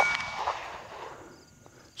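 A struck steel target ringing after a pistol shot, with the shot's echo dying away over about a second and leaving a faint outdoor background.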